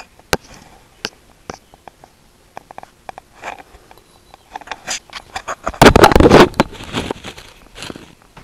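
Close handling noise: scattered sharp clicks and knocks, then a loud rustling scrape about six seconds in that lasts under a second.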